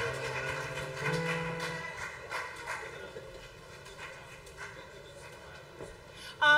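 A live band's sustained chord, keyboard with bass and electric guitar, ringing out and fading over the first two seconds, followed by quieter stage noise with a few light clicks.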